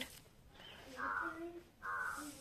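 Crow cawing twice, about a second in and again near the end, faint and harsh.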